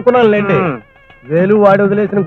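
A man speaking in long, drawn-out phrases with held vowels, pausing for about half a second near the middle.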